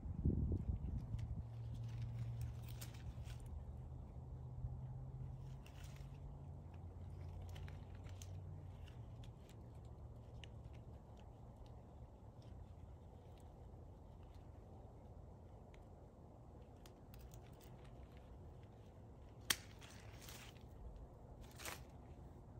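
Hand pruning of a sweet lemon bush: scattered faint clicks of shears snipping twigs, with leaves rustling and one sharper snip near the end. A low hum fades out in the first few seconds.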